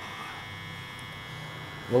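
Room tone: a steady electrical hum with faint, thin high-pitched tones above it.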